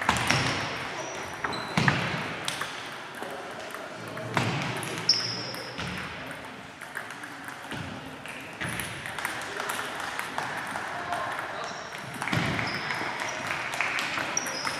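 Table tennis balls clicking irregularly off bats and tables from several matches at once, over a general hubbub of voices in a large hall. A few short high squeaks sound now and then.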